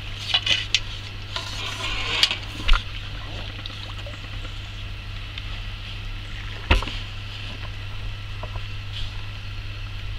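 Water splashing and knocks of a landing net as a carp is drawn in and handled in the net at the water's edge, with a few sharp knocks in the first three seconds and another near seven seconds in. A steady low hum runs underneath.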